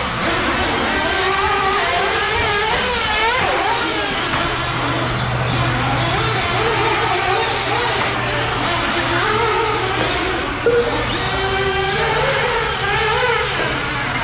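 Several 1/8-scale nitro RC buggy engines running a race, buzzing and revving with their pitch rising and falling over and over as they brake and accelerate around the track.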